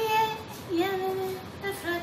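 Music with a high voice singing a few long, held notes.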